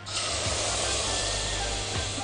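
Milk being poured into a metal saucepan on the stove, heard as a steady hiss that starts abruptly.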